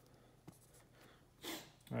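Faint taps and scratches of a dry-erase marker on a plastic coaching whiteboard, with a short louder rush of noise about one and a half seconds in.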